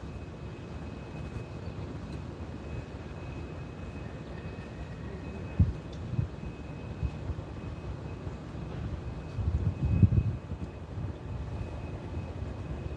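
Steady low rumble of distant engines, with one short knock about five and a half seconds in and the rumble swelling louder for about a second near ten seconds.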